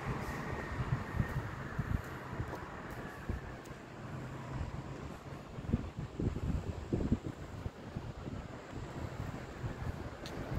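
Wind buffeting a phone's microphone in uneven low rumbling gusts, over a faint steady background hum.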